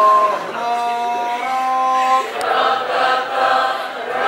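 A group of voices singing together in unison, holding long notes. About halfway through, the singing turns into a fuller, denser mass of voices.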